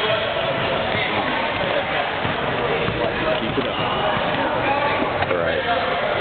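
Many overlapping voices of spectators chatting in a gymnasium.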